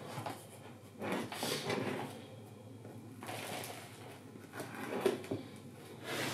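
Black plastic plant pots and potting compost being handled on a plastic tray: irregular scrapes and rustles with a few light knocks, the sharpest near the end.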